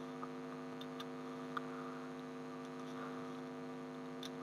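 Steady electrical hum with several evenly spaced tones, picked up on the recording, with a few faint short clicks.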